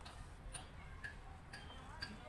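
Quiet, sparse little ticks and pops from wet fingers dabbling in a basin of muddy sand-laden water, with small bubbles rising and breaking at the surface.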